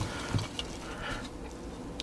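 Quiet handling of a cement can's dauber and a plastic flange: faint rubbing with one soft knock about a third of a second in, over low room hum.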